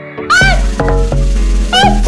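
A song with a heavy bass beat that drops in about a third of a second in, with high, bending vocal-like cries over it.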